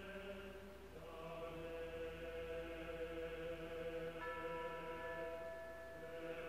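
Background music of slow, sustained chords, with the chord changing about a second in and new higher notes joining near four seconds.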